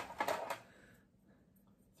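Wooden craft sticks clicking against each other and the rim of a small container as one is drawn out, a few light clicks in the first half-second.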